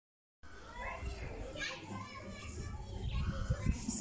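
Children's voices at play, faint, over a low rumble, starting about half a second in.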